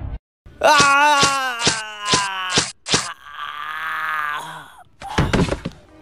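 A man wailing loudly in fright, struck through by a run of sharp whacks about twice a second, followed by a lower, drawn-out groan.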